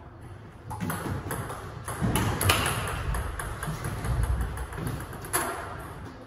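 Table tennis rally: a celluloid/plastic ball clicking off rubber-faced paddles and bouncing on the table in a quick series of sharp clicks, ending a little before the end with one more hard click.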